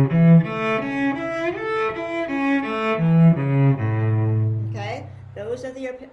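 Cello bowed through an A major arpeggio (A, C-sharp, E), a few notes a second stepping up and down across octaves. It ends on a long low note held for about a second before a woman's voice comes in near the end.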